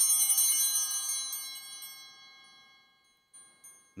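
Altar bells shaken once to mark the epiclesis, as the priest holds his hands over the bread and wine to call down the Holy Spirit: a bright jangle of several bell tones that rings on and fades away over about three seconds, with a faint last tinkle near the end.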